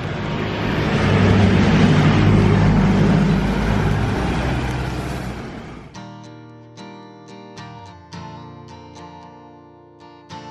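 Road traffic on a rain-wet street: a vehicle passes with low engine rumble and tyre noise, swelling and then fading. About six seconds in it cuts off suddenly and acoustic guitar music takes over.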